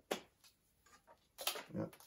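Hands handling thin ethernet-cable wires being pulled apart: a sharp click just after the start, faint rustles, and a short scrape about a second and a half in.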